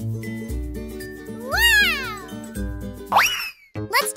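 Background music with a steady bass beat. About one and a half seconds in, a pitched call rises and falls over it, and a shorter rising call comes just after three seconds, followed by a brief drop in the music.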